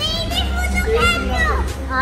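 Young children's excited, high-pitched voices calling out in short rising and falling cries, over background music with a steady low bass.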